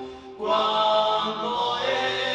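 A male voice singing a slow Spanish-language Andean folk song with acoustic guitar accompaniment and other voices in harmony. The singing breaks off briefly a fraction of a second in, then the next phrase comes in at full strength.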